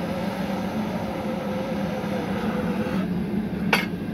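A handheld gas torch burning steadily as it fire-polishes the stem of a glass pumpkin, over a constant low drone. A single sharp click comes near the end.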